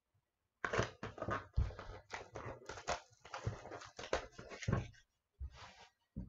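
A sealed hockey card box being opened by hand: a run of irregular crackling and crinkling as the packaging is torn and handled, with a short pause near the end.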